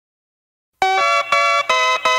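Music begins about a second in, after silence: a bright pitched chord struck in short, evenly repeated strokes, about three a second, as a song's intro.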